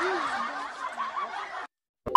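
Breathy, hissing laughter that cuts off suddenly near the end.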